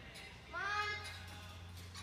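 A voice calling a drawn-out "Good" about half a second in, its pitch rising then falling, over faint background music.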